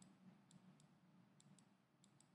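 Near silence with a few faint, sharp clicks, about five scattered across two seconds, from a stylus tapping a pen tablet as a word is handwritten.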